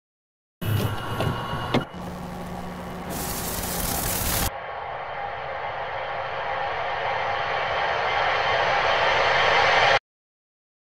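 Edited title-card sound effects: a few clicks and a short noisy burst, then a steady hissing swell that slowly grows louder and cuts off suddenly.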